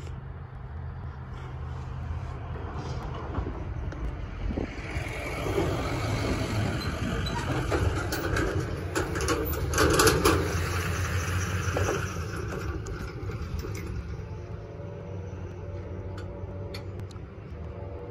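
A dump truck towing a trailer drives past and across the grade crossing, growing louder to a peak about ten seconds in, with some rattling, then fading away. A few seconds later the crossing's warning bell starts ringing steadily as the signals activate ahead of the gate coming down.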